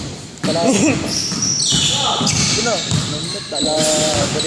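A basketball bouncing on a hardwood gym floor in sharp strikes, with players' shouting voices echoing in the large hall.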